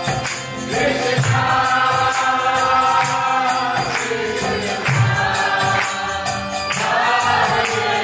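Kirtan: a group of voices singing a devotional chant together, over a fast, steady beat of jingling metal percussion.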